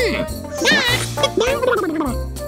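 Cheery Christmas background music with a cartoon character's voice over it: two short vocal noises with a wobbling pitch, the second lower than the first.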